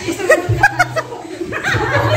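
Young women laughing together in short, choppy bursts of giggles and chuckles.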